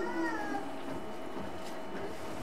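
A brief high-pitched call, like a small voice, rising slightly and then falling, that fades out about half a second in.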